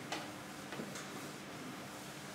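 A few faint, light taps on a blackboard, the first about a tenth of a second in and two more close together near the one-second mark, over quiet room tone.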